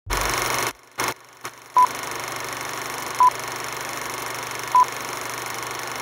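Film-leader countdown effect: steady old-film hiss and crackle over a low hum, with three short high beeps about a second and a half apart. The hiss drops out briefly twice in the first two seconds.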